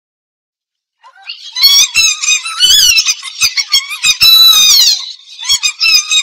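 Opening of a Tamil film song: after a second of silence, a very high, squeaky melodic line comes in, bending up and down in short phrases with little bass under it.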